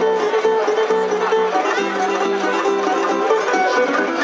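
Tamburica orchestra playing: plucked tamburicas carry the melody and chords over a plucked begeš (tamburica bass).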